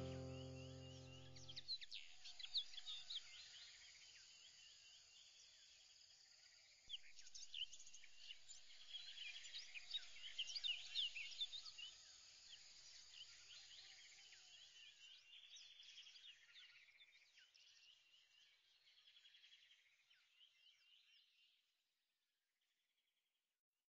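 A held music chord dies away, then faint birdsong follows: many quick high chirps from several birds, growing busier about seven seconds in and fading out near the end.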